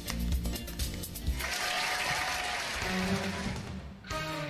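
Background music with a steady bass beat; about a second and a half in, a wash of applause rises over it and stops abruptly just before the end.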